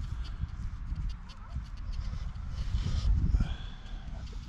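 Wind buffeting the microphone: a low, irregular rumble that swells about three seconds in, with faint scattered clicks.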